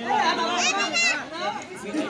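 Speech only: people talking and calling out, with one louder, higher-pitched call about a second in.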